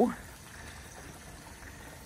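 Faint, steady rush of water running from a hose into a goat water trough.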